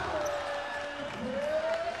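Arena ambience at a professional basketball game: crowd noise and sounds of play on the court, with a faint held tone that bends upward in the second half.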